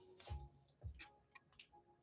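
Faint background beat music: soft low kick drums about every half second with light ticking clicks over a few held notes.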